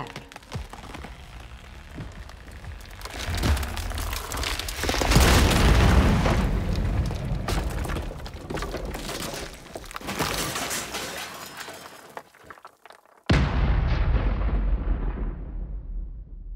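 Sound effects of a bridge collapsing: a mass of cracking and crashing that swells a few seconds in and tails off. After a brief hush, a sudden deep boom comes near the end, and its rumble dies away.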